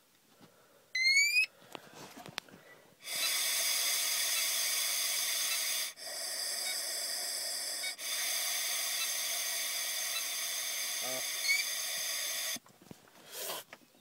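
A short rising beep from an Intoxalock ignition interlock breathalyzer, then a long, steady breath sample blown through its blow tube for about nine and a half seconds. The blow comes as a whistling hiss with two brief dips partway through and cuts off suddenly near the end.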